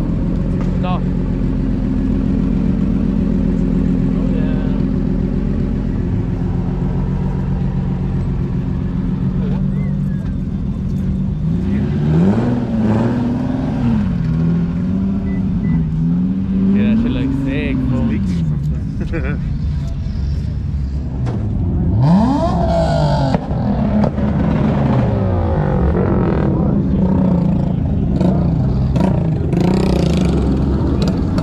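Car engines running at low revs, then revved again and again, the pitch climbing and falling several times from about twelve seconds in, with a quick, steep rev a little past the middle.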